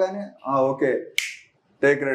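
A man talking in a small room. About a second in, his speech is broken by a single sharp click that trails into a brief high hiss.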